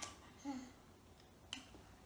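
Quiet mouth sounds of eating crêpe: a brief low hum about half a second in, then a single sharp smacking click about a second and a half in.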